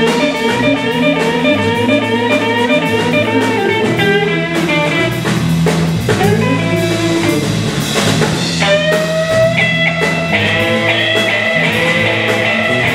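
Live blues trio playing an instrumental passage: electric guitar lines with bent notes over electric bass and drum kit, the guitar moving to long held high notes about eight seconds in.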